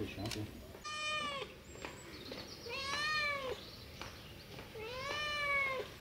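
A domestic cat meowing three times, about two seconds apart, each meow rising and then falling in pitch.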